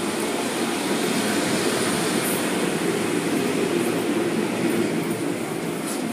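Automatic tunnel car wash machinery running: a steady, even rumble and rush with no let-up.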